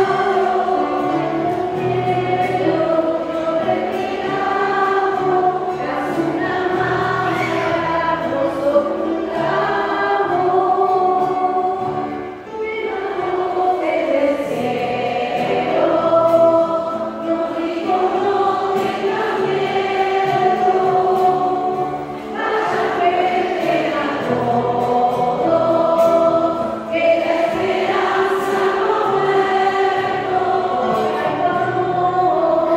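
A congregation of women singing a hymn together with piano accompaniment, with short breaks between phrases.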